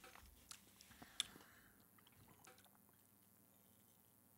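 Near silence broken by a few faint clicks and swallows in the first second and a half: a man gulping a drink from a can.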